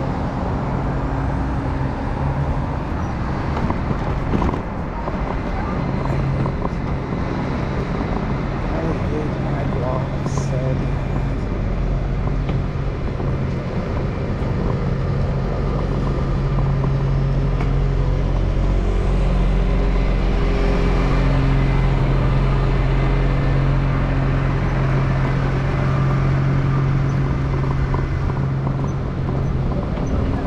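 City street traffic heard while moving along the road: a steady low hum and rumble, growing a little louder around the middle, with a couple of brief sharp sounds early on.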